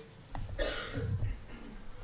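A person coughs once, a short rough burst about half a second in.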